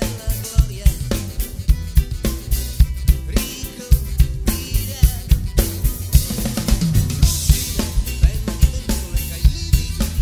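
Drum kit played along with a recorded song: a continuous groove of kick drum, snare and cymbals over the song's own instruments. The kit is a Drum Sound Rebel exotic mahogany set with a Ludwig Black Beauty hammered snare and Meinl cymbals.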